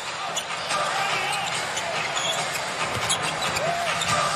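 Basketball arena sound during live play: a steady crowd murmur with a ball bouncing on the hardwood and a few short, high squeaks typical of sneakers on the court.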